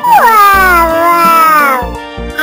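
A long, high-pitched cry that falls slowly in pitch for almost two seconds, over background music.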